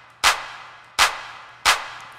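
A sampled hand clap played back three times, about two-thirds of a second apart. Each hit is sharp and dry, followed by a reverb tail that fades away before the next. The reverb is Fruity Reverb on a send channel, set with the dry level at zero, so the clean clap and the separate wet tail are both heard.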